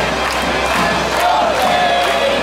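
Singing voices from a parade float's loudspeakers, held notes over the steady noise of a street crowd.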